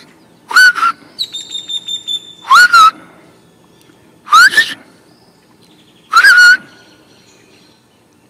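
Birds calling: four loud short calls about two seconds apart, each a note rising in pitch. Between the first two calls, a thin steady high whistle lasts about a second.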